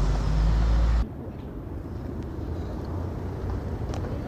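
City street traffic: a loud, low rumble of a passing vehicle for about the first second, cut off suddenly, then a quieter, steady traffic hum.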